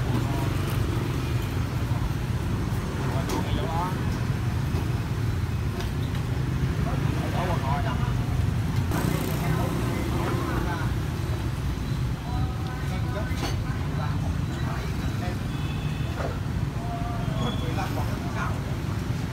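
Steady motorbike and street traffic noise with a continuous low rumble, with snatches of background talk.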